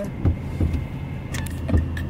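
Car running with a steady low hum, with a few soft thumps and clicks over it.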